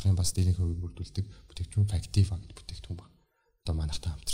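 A man speaking into a close microphone, with a brief dead-silent gap about three seconds in.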